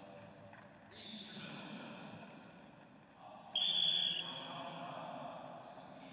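A short, shrill whistle blast about three and a half seconds in, sounding the end of the first period of a wrestling bout, over faint hall noise.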